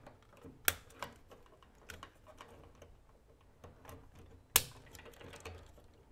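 Small plastic clicks and snaps from a Leviton Decora Edge receptacle's built-in lever connectors being worked as wires are fitted into them. Two sharp snaps, about 0.7 s in and about 4.5 s in, are the loudest, with lighter ticks between.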